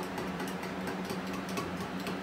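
A steady low hum, with faint, irregular light clicks from a probe being worked in a cup of melted soft plastic while its temperature is checked.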